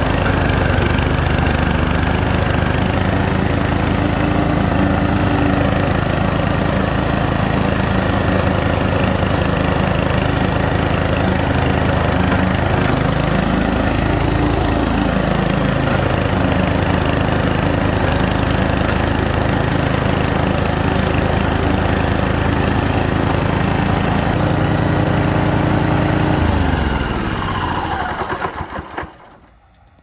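PowerSmart 209cc gas walk-behind mower engine running steadily while being pushed across the lawn, its pitch dipping and recovering briefly about halfway through. Near the end the engine is shut off and winds down to a stop.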